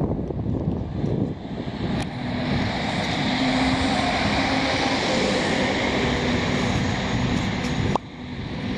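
City bus passing close by, its engine sound swelling from about two seconds in and holding as a steady hum, over wind rumbling on the microphone.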